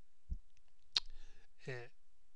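A soft low thump, then a single sharp click about a second in, followed by a short spoken 'uh' near the end.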